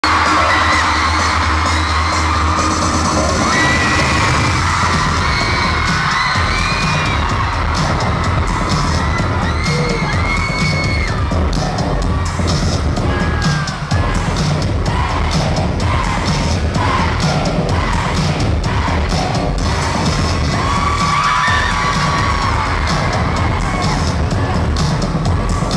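Loud dance music with a heavy, pounding beat playing over a concert sound system, with a crowd of fans screaming and cheering over it.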